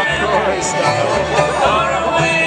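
Live bluegrass band playing an instrumental passage, with fiddle melody over plucked strings and low notes alternating on a steady beat.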